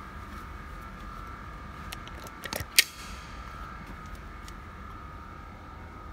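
Steady low hum with a faint high whine, and a short run of light clicks about two and a half seconds in, ending in one sharp click near the three-second mark.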